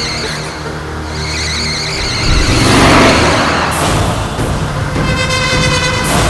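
Dramatic film background music over the sound of cars driving on a highway, swelling in loudness about two to three seconds in.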